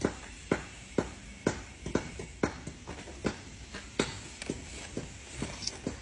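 A series of light clicks and knocks, about two a second at first and then less regular.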